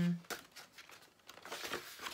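Paper pages of a hand-painted art journal rustling and crinkling as they are turned, with a few light flicks.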